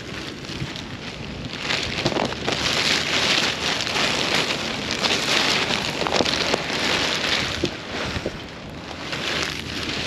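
Black plastic trash bag crinkling and rustling as it is handled and carried close to the microphone, a dense crackle that grows louder a couple of seconds in and eases off near the end.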